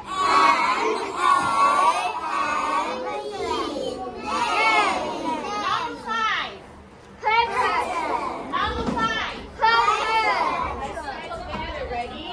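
Many young children's high voices overlapping, reading aloud from their books and chattering at once, with a short lull a little past the middle.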